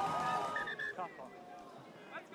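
Faint voices over low outdoor field ambience, growing quieter through the second half.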